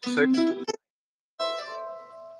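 An electric guitar plucked once about a second and a half in, its note ringing on and slowly fading.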